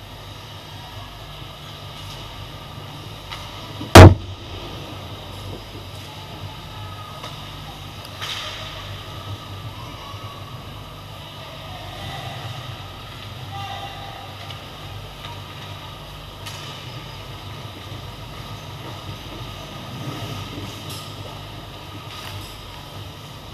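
Ice hockey play close to the goal: a steady low rumble of rink noise with occasional knocks, and one very loud sharp crack about four seconds in, a hard hit close to the microphone.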